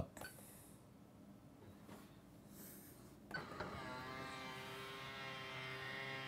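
Near silence, then about three seconds in the Polymaker Polysher's small electric motor starts with a brief rising whine and runs on steadily as the machine opens after its button is pressed.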